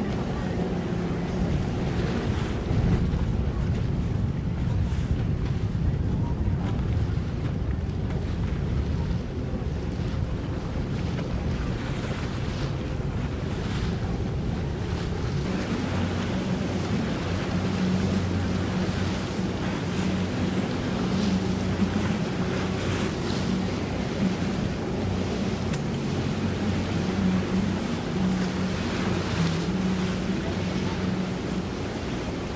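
Wind buffeting the microphone over open water, with the low steady hum of boat engines running. The engine hum grows stronger about halfway through.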